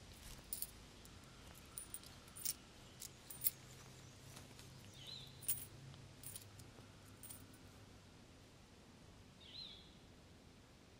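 Faint background with scattered small clicks, two brief high chirps about five seconds in and near the end, and a low hum that fades out after about seven seconds.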